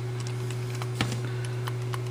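A few light clicks and taps of small plastic parts being pressed and fitted by hand on a robot car kit's motor gearbox, the sharpest about a second in, over a steady low hum.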